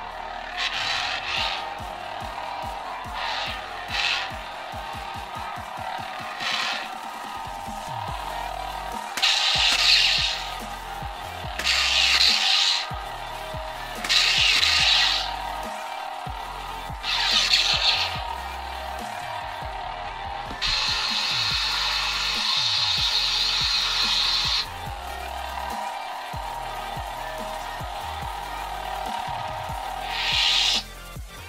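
Sound board of a budget RGB lightsaber playing its Ben Solo sound font: a steady electric hum, with swing whooshes in the first few seconds and louder swells from about nine seconds in. About two-thirds of the way through comes a sustained buzzing that lasts about four seconds.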